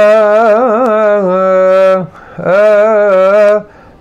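A solo man's voice chants a Coptic hymn melody, unaccompanied. He sings two long phrases of held, ornamented notes with wavering turns, takes a short breath between them, and stops just before the end.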